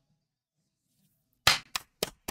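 Near silence, then two hand claps: a loud one about one and a half seconds in and a softer one just after.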